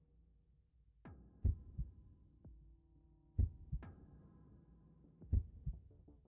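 Heartbeat sound effect in an intro: three slow double thumps, about two seconds apart, each led in by a short falling swoosh, over a steady low hum.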